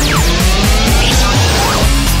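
Produced radio-station jingle: music with a steady low beat, overlaid with sweeping sound effects. A steep falling whoosh comes at the start, followed by long gliding tones.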